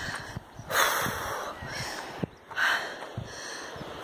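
A woman breathing hard and out of breath from climbing a steep path, with a few loud, hissing breaths, the strongest about a second in and another near three seconds.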